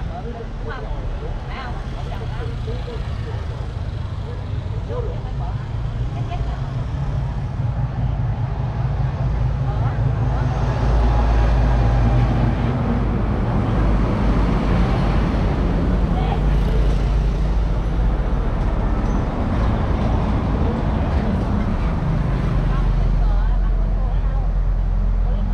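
Road traffic passing close by: engine rumble and tyre noise from passing vehicles, swelling about ten seconds in as a large vehicle goes past and staying loud after, with faint voices underneath.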